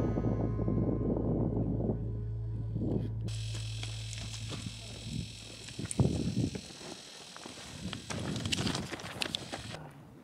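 Background music fading out, giving way to open-air camera sound with indistinct voices and a few sharp knocks, the loudest about six seconds in.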